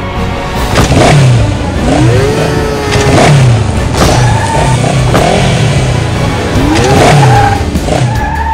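Sound-effect vehicle engine revving, sweeping up in pitch twice, with several sharp mechanical hits, laid over background music.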